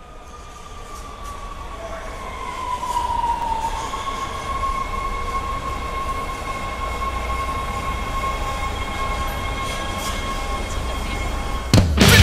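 A train's running noise fading up, with a high metallic wheel squeal that dips a little in pitch about three seconds in and then holds steady. Just before the end, a loud hardcore punk band comes in.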